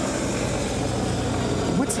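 Steady engine-like drone from a science-fiction film soundtrack playing through a TV's speakers, picked up in the room. Speech comes in near the end.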